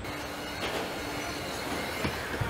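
Steady machine noise of a car assembly line, a hiss with a faint low hum and a few light knocks.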